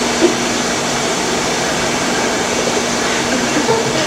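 Steady hiss of hall room noise and the sound system, with a faint low hum running under it.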